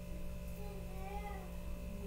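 A faint, drawn-out vocal sound that rises and falls in pitch, over a steady electrical hum.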